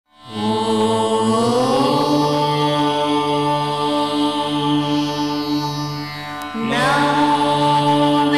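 Indian devotional music: a chant-like vocal over a sustained drone, sliding up in pitch about a second in, with a new phrase starting with another upward slide near the end.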